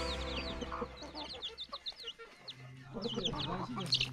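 Domestic chicks peeping: many short, high calls in quick succession, with a hen clucking lower among them.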